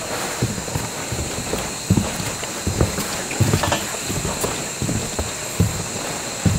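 Footsteps thudding on the deck of an old suspension bridge, roughly one or two steps a second, over a steady high hiss.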